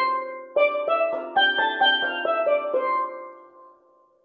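Lead steel pan struck with two sticks. One note sounds, then a quick run of about nine notes climbs in pitch: an ascending major scale. The notes ring on and fade out near the end.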